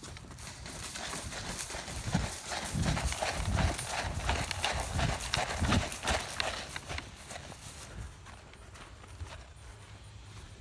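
Running footsteps on grass, a steady run of heavy thumps with grass and clothing rustling and the phone jostling. The footfalls are loudest in the middle and ease off near the end as the runner slows to a stop.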